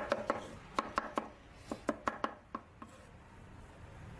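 Kitchen knife chopping tomatoes on a wooden cutting board: a quick, irregular run of sharp knocks of the blade on the board, which stops about three seconds in.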